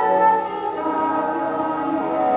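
Singing from a stage musical with accompaniment, the voices holding long, sustained notes.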